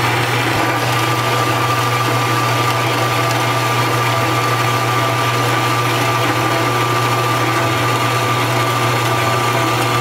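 Metal-cutting bandsaw running and sawing through 1-inch mild steel square bar: a steady motor hum with a constant thin high tone over the rasp of the blade.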